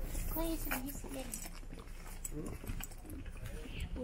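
People talking over a steady low rumble, their voices coming in short phrases.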